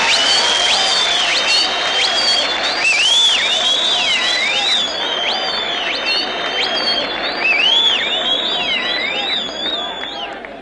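Concert audience applauding and cheering, with shrill gliding whistles over the clapping. The clapping thins out about halfway through, while the shouts and whistles carry on.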